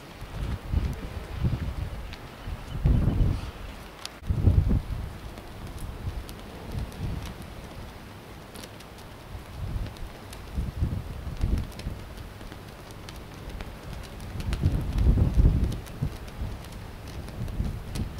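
Wind buffeting the camcorder microphone in irregular gusts, loudest about three and four and a half seconds in and again near the end, with a few faint ticks between.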